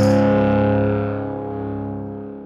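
Final held chord of a deathpunk rock song on distorted electric guitar, ringing out and fading away about a second in.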